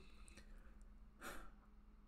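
A man's short sigh, one breathy outbreath about a second in, over a faint low hum.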